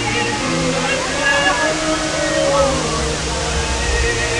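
Tall water jets of a large musical fountain rushing and splashing down in a steady wash, with a song from the show's loudspeakers playing over it.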